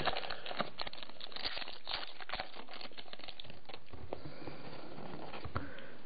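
Pokémon trading cards being handled, with light rustling and clicking that is busiest in the first couple of seconds and then eases off to a few faint clicks.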